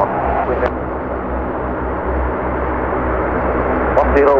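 The four turboprop engines of a C-130 Hercules running on the ground, a steady low propeller drone with a constant hum above it. A short click comes about half a second in.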